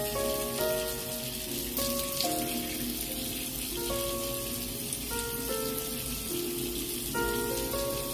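Water from a bathroom mixer tap running into a sink and splashing as a face is washed, mixed with background music of steady melodic notes. The water stops just after the end.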